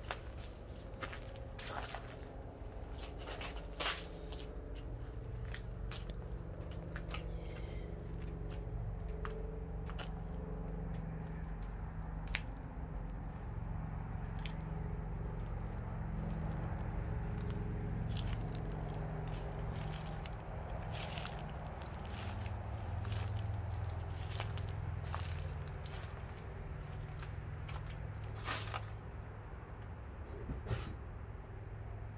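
Footsteps crunching through dry leaves and debris, with irregular crackles and snaps, over a steady low rumble.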